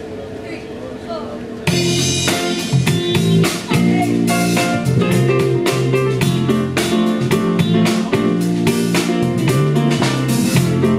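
Live band starting a song: after a quiet moment, drum kit, electric guitar and piano come in together suddenly about two seconds in and play on at full volume with a steady beat.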